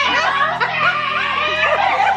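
Several women laughing and chuckling in short bursts, over music playing in the background.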